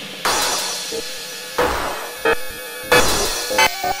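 Hardcore techno track in a sparse passage with no kick drum: sharp crash-like hits at uneven intervals, each trailing a falling sweep.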